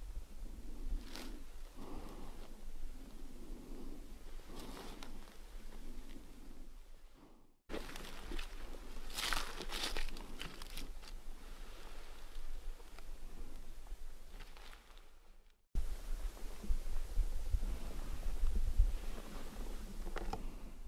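Footsteps crunching over rocky, gravelly ground with rustling of clothing and gear, plus a low rumble on the microphone that is heaviest near the end. The sound cuts out abruptly twice.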